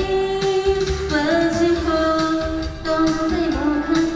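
A woman singing a pop song into a microphone over backing music played through stage loudspeakers, holding long notes with a slight waver.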